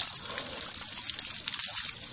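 A steady stream of water from a hose hissing and splashing as a black bear's paws break it up, water spattering into a bucket and onto the mud below.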